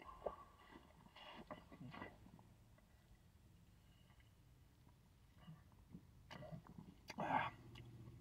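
Faint sips and swallows of soda drunk from a can, in the first couple of seconds, then near silence with a few faint ticks.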